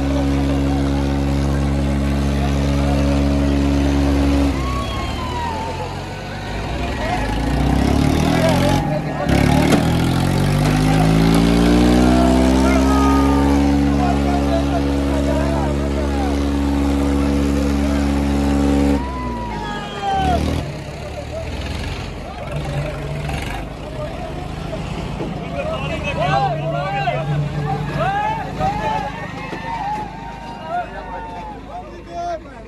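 Tractor diesel engine running hard at high revs in a tug-of-war pull. Its pitch sags about five seconds in, climbs back over the next few seconds, then cuts off suddenly about two-thirds of the way through. After that a crowd shouts and cheers.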